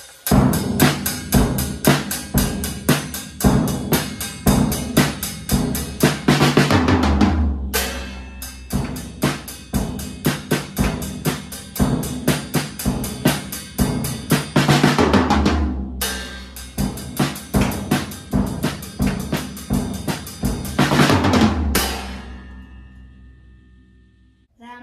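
A child drummer playing a rock beat on a drum kit, with bass drum, snare and cymbals in steady, busy patterns and rolls. The playing comes in three phrases split by two short breaks, and ends with a crash whose ring fades out near the end.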